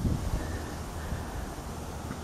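Wind buffeting the camera microphone: a steady low rumble with a faint hiss above it.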